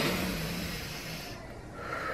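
A woman breathing out slowly, a soft breath that fades away over about a second.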